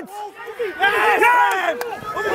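Rugby players shouting calls to each other during play, several voices overlapping, with a short sharp click near the end.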